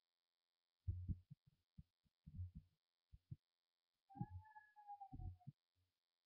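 Faint, distant thuds from elsewhere in the house, coming in irregular clusters. A little past halfway a distant high-pitched scream is heard once, lasting about a second and a half and sagging slightly in pitch.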